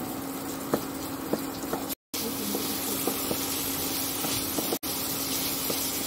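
Diced capsicum and carrot sizzling lightly in butter in a kadhai, with scattered small clicks of a wooden spatula stirring and scraping the pan over a steady low hum. The sound cuts out briefly twice, about two seconds in and near the five-second mark.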